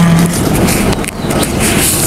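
Vietnamese polymer banknotes rustling as they are counted out one by one by hand, with a crisp flick of a note near the end, over steady background noise.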